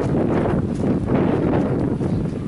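Wind buffeting the camera microphone: a loud, steady low rush.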